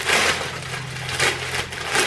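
A clear plastic garment bag crinkling and rustling as it is handled. The crackle is loudest at the start and again about a second in.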